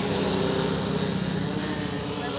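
Multirotor agricultural spraying drone in flight, its propellers giving a steady hum with a few held tones.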